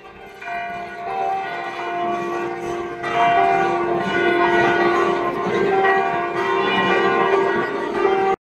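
Hindu temple bells ringing continuously, many overlapping rings building up and growing louder about three seconds in. The bells are rung in full as the deity's procession begins.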